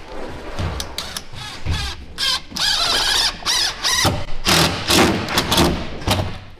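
Cordless drill driving screws into a plywood board, running in short stop-start bursts among knocks, with a wavering high squeal near the middle.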